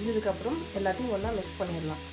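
A person's voice with shifting, wavering pitch, continuing through the whole two seconds.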